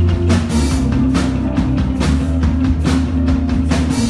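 Punk rock band playing an instrumental stretch with no vocals: regular drum-kit and cymbal hits over held guitar and bass notes.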